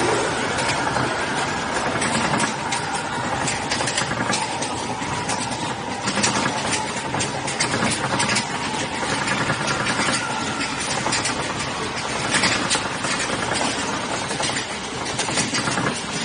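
Space Mountain roller coaster train running along its track, a steady rumble full of rapid clicks and clatter, with a faint steady hum underneath.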